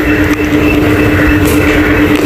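A loud, steady mechanical drone with a constant low hum that runs unbroken.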